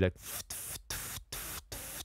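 Recorded shaker track playing back soloed: about five even rattling strokes, each followed by a short gap. It is heard through a compressor set to fast attack and slow release, which levels the strokes out and takes away their initial peaks.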